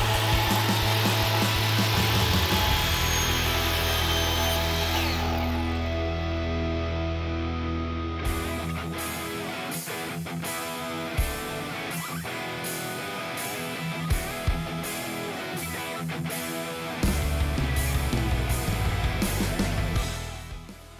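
A Kobalt 10-inch miter saw running and cutting through a faux stone veneer block for roughly the first eight seconds, over background music. After that the music carries on alone with a steady beat and a few light knocks.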